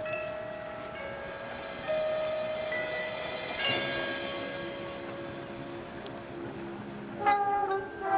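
Drum and bugle corps horn line holding long sustained chords, with new notes coming in and the chord changing about two and four seconds in. Near the end the full corps comes in with loud, rhythmic accented hits.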